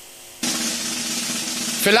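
Studio snare drum roll played for suspense in a quiz game. It starts about half a second in, after a brief hush, and runs on steadily.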